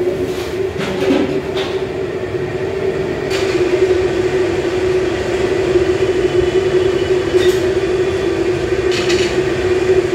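Blower-fed kitchen burner under a large kadai running with a steady roar and hum, over the sizzle of chicken pakoras deep-frying in hot oil. A few brief clinks of the metal skimmer against the pan.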